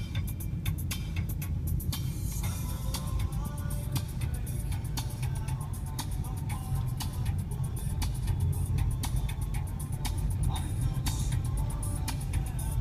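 Inside a moving car: the car's steady low road-and-engine rumble while driving, with music playing over it.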